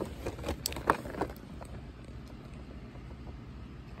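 Handling noise from a cardboard-and-plastic toy box being moved about close to the microphone: a few short clicks and knocks in the first second and a half, then only a low steady rumble.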